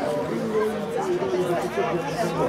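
Speech only: spectators talking near the microphone, with more chatter behind.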